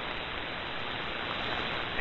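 Steady static hiss of an AM shortwave signal received on the 75-meter ham band through an SDR receiver, heard as an even, thin noise while the transmitting station is silent between words.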